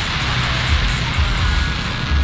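Fireworks hissing and crackling in a steady dense wash, over an irregular deep rumble.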